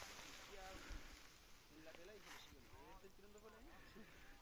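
Near silence: faint, distant voices talking over a soft background hiss.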